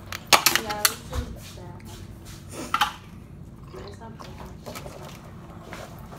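Clear plastic lid crackling and snapping as it is pried off an aluminium foil dessert pan, with a cluster of sharp clicks in the first second and another burst about two and a half seconds later.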